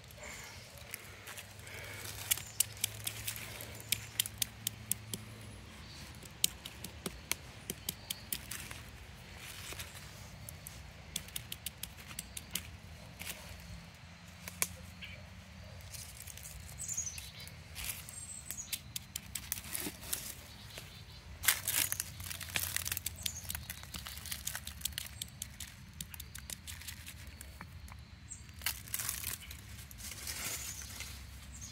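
Dry leaf litter and twigs crackling and snapping as they are stepped on and handled, in many irregular sharp clicks, with a low rumble underneath.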